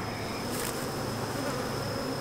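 Steady buzzing of a honeybee colony, the bees crowding over a brood frame lifted out of an open hive.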